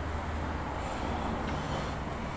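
Steady low hum under an even background noise, with no chopping strokes.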